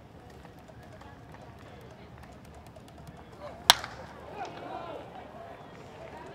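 A wooden baseball bat strikes a pitched ball with a single sharp crack about three and a half seconds in. Under it runs a steady murmur of crowd voices, which swells briefly after the hit.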